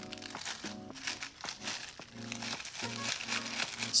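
Crinkly iridescent cellophane-type film crackling as it is cut with scissors and handled, over soft background music.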